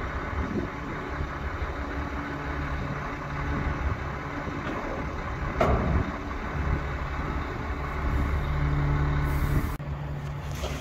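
Heavy truck engine idling steadily, with a single knock about five and a half seconds in.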